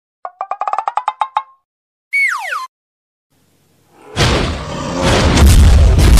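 Cartoon sound effects: a quick run of about a dozen popping notes rising slightly in pitch, then a short falling whistle. From about four seconds in, a loud rumbling boom takes over and is the loudest sound.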